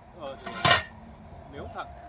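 A metal scoop knocks against a cast-iron cauldron as stew is ladled out, one sharp clank about two-thirds of a second in, with faint talk around it.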